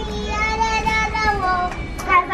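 A child's voice holding one long sung note for most of two seconds, dipping slightly in pitch near the end.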